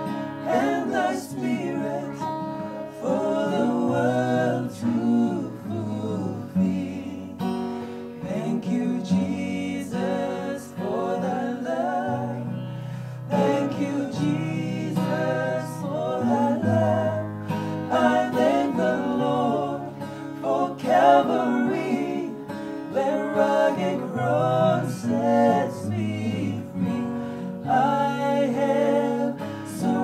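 Gospel song sung in harmony by a man and two women, with the man strumming a steel-string acoustic guitar.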